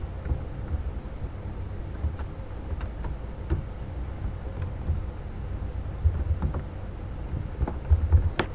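Scattered light clicks of a computer mouse and keyboard keys as a text box is placed and a label typed into it, over a low steady background rumble.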